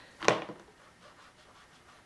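Felt brush tip of a water-based twin brush marker rubbing and scratching over paper while a swatch is coloured in, faint, with one short sharper sound about a quarter second in.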